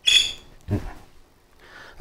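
A man's sharp, breathy exhale starting suddenly and fading within half a second, followed a moment later by a short voiced sound from the throat.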